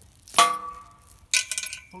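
Short steel chain with a hook clinking as it is handled: two sharp metallic clinks about a second apart, each ringing briefly.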